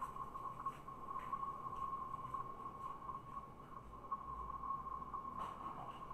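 A steady high-pitched whine held at one pitch, with a few faint clicks.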